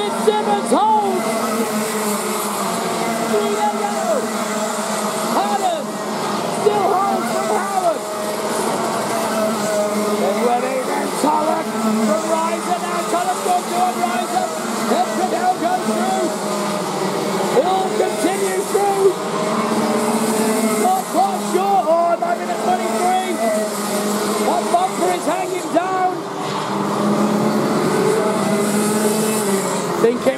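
A pack of Rotax Max 125 karts, single-cylinder two-stroke engines, racing past together. Many engines overlap, each one's pitch rising and falling as the karts ease off and accelerate through the corners.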